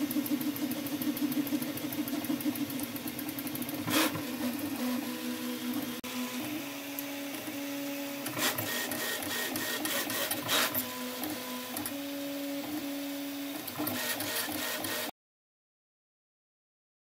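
Prusa MK4 FDM 3D printer printing: its stepper motors hum in steady tones that jump from pitch to pitch as the print head changes moves, with a few short rattles along the way. The sound cuts off suddenly near the end.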